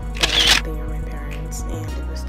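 Background music with a steady bass line, and a camera-shutter sound effect about a quarter second in as a new photo slides onto the screen.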